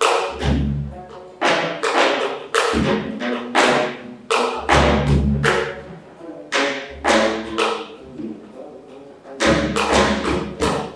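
Solo geomungo, the Korean six-string zither, its strings struck and plucked with a bamboo stick. Each stroke is a sharp attack with a knock of the stick against the instrument, over deep ringing low notes. The strokes come about one or two a second at an unhurried, uneven pace, with a short lull shortly before the end.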